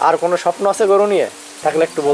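Speech only: a person talking in Bengali, with a short pause a little past the middle.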